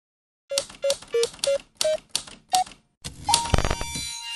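Title sound effect of typewriter-like keystrokes, six in a row about a third of a second apart, each with a short electronic beep; the first two beeps are at one pitch, the third is lower, and the last ones step up. Then a louder clatter with a low thump and a held tone that opens into a ringing chord near the end.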